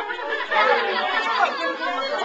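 Several people talking over one another in a room: indistinct overlapping chatter.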